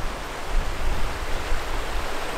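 Shallow, rocky mountain river rushing over stones, a steady hiss of running water, with wind rumbling on the microphone.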